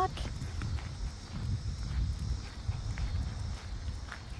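Footsteps crunching on a gravel road at a walking pace, roughly two steps a second.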